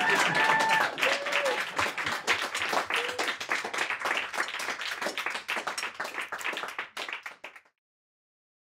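Audience applauding, with a few cheering shouts in the first few seconds. The clapping thins out and cuts off abruptly just before the end.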